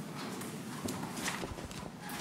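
Marker pen on a whiteboard: a run of light, irregular taps and short scrapes as writing goes on.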